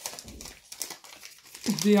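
Crinkling and rustling of a chocolate bar's wrapper as it is unwrapped by hand: a quick run of short crackles that gives way to speech near the end.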